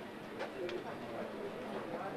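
A pigeon cooing over the low murmur of a crowd, with a few faint clicks.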